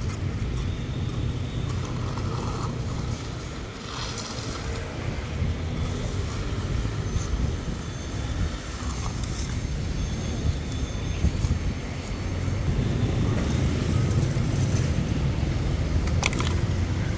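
Wind buffeting the microphone as a steady low rumble, over general outdoor background noise.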